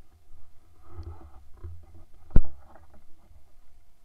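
Footsteps and brushing through leafy undergrowth, with a low rumble of wind and handling on the body-worn microphone and one sharp knock about two and a half seconds in.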